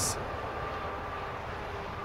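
Steady low background rumble with a faint even hum, no distinct events.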